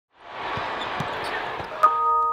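A basketball bouncing on a court, a few low bounces about half a second apart, under the steady noise of an arena crowd. Near the end comes a sharp click, and a ringing chord starts.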